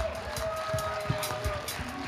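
Soft background music: a sustained keyboard-like note held steady, joined about half a second in by a higher held note, both fading out near the end, over a low hum of congregation noise.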